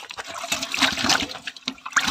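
Water splashing and sloshing in a metal basin as a hand swishes through it, starting about half a second in.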